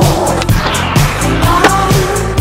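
Skateboard wheels rolling on concrete over background music with a steady beat, with a sharp clack of the board about a second and a half in.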